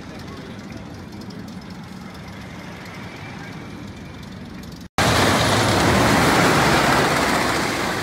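Faint outdoor ambience, then, about five seconds in, a sudden loud rumble of a GCI wooden roller coaster train running on its wooden track close by.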